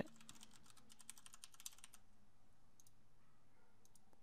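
Faint typing on a computer keyboard: a quick run of keystrokes for about two seconds, then a couple of faint clicks about three seconds in.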